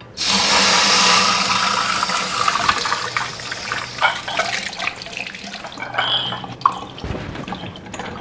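Kitchen tap turned on, water running into a stainless-steel sink: it comes on suddenly, is strongest for the first second and then runs a little softer. A couple of sharp clinks sound over the running water.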